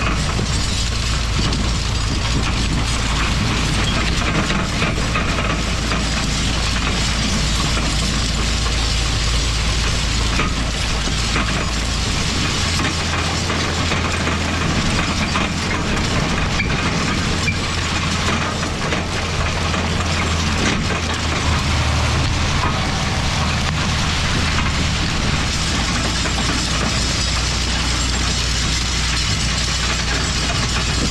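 Steel chain harrow links rattling and clattering continuously as they drag over tilled soil, heard close up, with the John Deere 4020 tractor's engine running steadily underneath.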